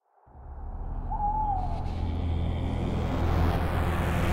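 A low steady drone fading in, with an owl hooting once, a short call that dips slightly in pitch, about a second in.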